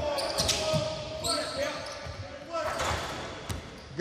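A basketball being dribbled on a hardwood gym floor during a live practice drill, with players' indistinct voices in a large gym.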